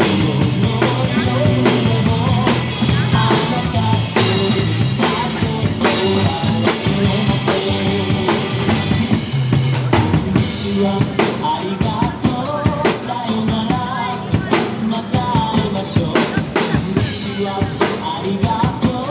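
Acoustic drum kit played live at a steady beat, with kick drum, snare hits and cymbals, over backing music with a bass line and melody.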